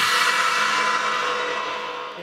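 Drum kit cymbals ringing out after a final crash and fading away steadily, with no further strokes.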